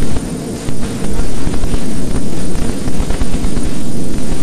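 Loud, harsh, distorted static-like noise with a heavy low rumble, a glitch sound effect on the edit's soundtrack. It jumps louder about a second in and then holds near full level.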